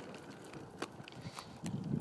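Child's plastic drift trike rolling on asphalt: faint hiss with a few light clicks, and a low rumble coming in near the end.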